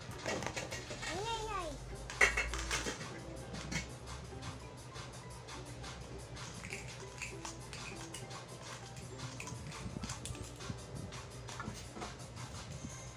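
Plastic toy cookware being handled: a spoon and pot clicking and clattering in light, irregular knocks, the sharpest one a little after two seconds in, over a steady low hum. About a second in there is a short rising-then-falling voice-like sound.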